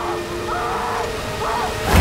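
Horror-trailer sound design: wavering, arching glides over a sustained low drone, cut off near the end by a sudden loud, deep boom that rumbles on as the title card hits.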